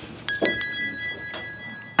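A high, steady electronic tone with a click at its onset, held for well over a second, like an edited-in comedy sound effect.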